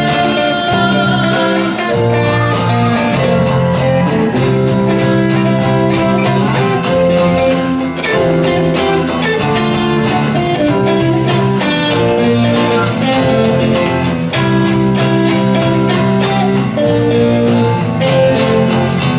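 A live band playing an instrumental passage: electric guitars over bass and keyboard, with a steady drum beat.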